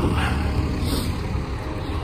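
Wind rumbling on a handheld phone's microphone outdoors, with road traffic swelling and fading as cars pass by.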